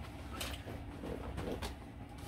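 Faint creaks and a few soft knocks as a person gets up and moves about with an accordion strapped on.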